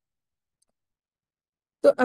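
Near silence: the audio drops out completely, as if muted, until a voice starts again abruptly near the end.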